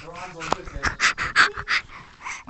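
A baby's brief voiced sound, then a quick run of breathy, panting huffs right against the microphone, about six in a second and a half.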